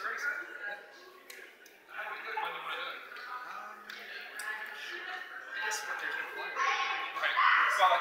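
Quiet talking: voices speaking at a low level, with a short lull about a second in.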